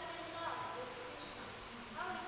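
A faint, distant voice speaking away from the microphone, heard over room tone.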